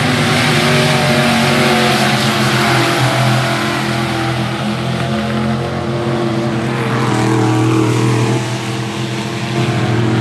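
Several dirt-track modified race cars running at racing speed, their engines droning together with shifting pitches as they lap the track. The sound dips a little near the end, then builds again.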